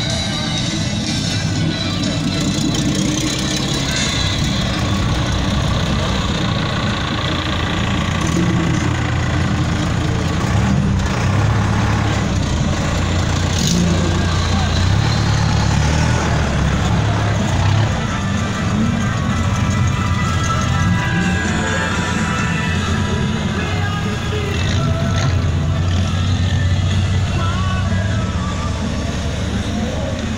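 Vehicle engines running, mixed with people talking and music playing.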